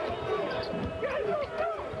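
Basketball bouncing on a hardwood court in live play, with arena crowd noise behind it.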